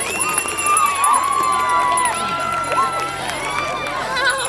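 A crowd of young girls shouting and calling out excitedly, many voices overlapping, with several high, drawn-out calls.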